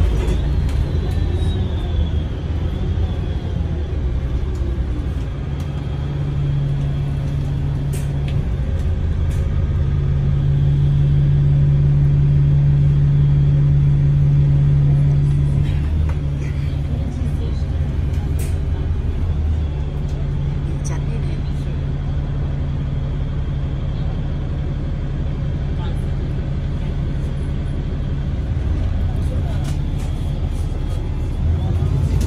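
City bus heard from inside the passenger cabin: a steady low engine hum and road rumble. It grows louder for several seconds in the middle and eases off about halfway through.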